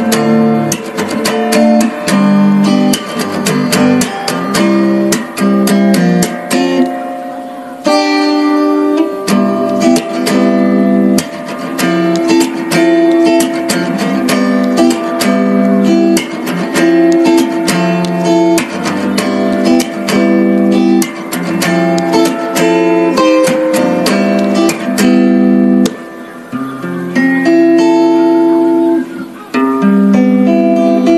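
Background music: acoustic guitar strumming and picking at a steady pace.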